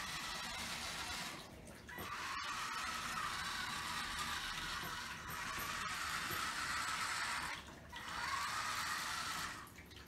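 Small DC gear motors of an Arduino robot car whirring steadily as it drives. The whir cuts out briefly about one and a half seconds in and again about eight seconds in, as the car stops, then dies away just before the end.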